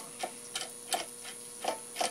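Light clicks, about three a second with a short pause near the end, as the threaded steel bolt of a steering-pin puller is wound by hand into the threaded hole of a sailboat drive leg. A faint steady hum lies underneath.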